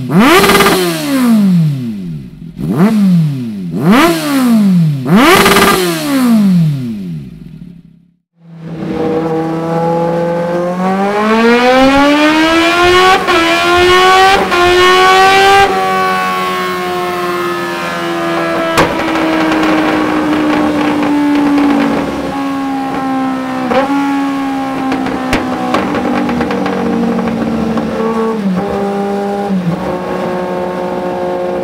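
Kawasaki Z750S inline-four through a Dominator GP1 slip-on silencer: several sharp free-revs at a standstill, each rising and quickly falling, in the first eight seconds. After a short break the engine pulls up steadily under load with the rear wheel turning on a roller, with one gear change partway up. Past halfway its speed falls slowly, with a couple of brief dips near the end.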